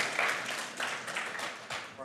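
Congregation applauding a volunteer called up to the stage, a dense patter of many hands clapping that gradually dies away toward the end.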